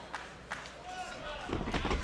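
Arena crowd noise with scattered voices, broken by a few sharp smacks and thuds from wrestlers striking each other and hitting the ring, most of them in the second half.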